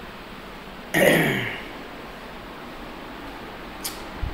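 A woman clears her throat once about a second in: a short, harsh vocal burst that drops in pitch. A brief click follows just before the end.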